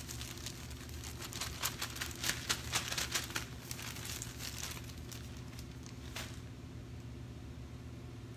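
Plastic packaging crinkling and rustling as it is handled, a run of quick crackly crinkles that dies away about six seconds in, over a low steady hum.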